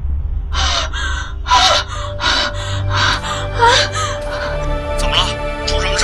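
A woman gasping and panting in fright, breathy gasps coming about twice a second with short whimpering cries among them, over tense background music.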